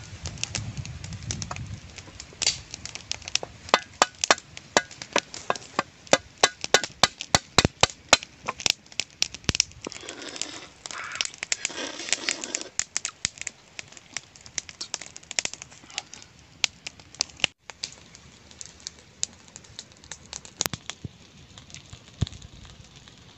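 A fast run of sharp clicks and cracks from about two seconds in to about ten, then a short stretch of rough crunching noise, then scattered single clicks for the rest.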